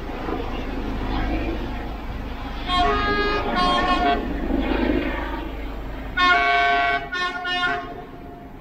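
Train horn sounding in short blasts: two about three seconds in, then a longer blast followed by a quick one near the end. Under it runs a steady low background hum.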